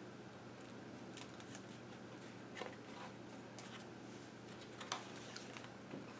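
Faint rustling and soft clicks of thick, paint-laden art-journal pages being turned by hand, with a sharper paper flick about five seconds in.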